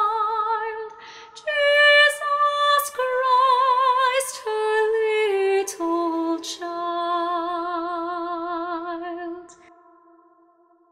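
A solo female voice singing a slow, lullaby-like melody with vibrato. The phrase steps downward to a long held low note that fades out near the end.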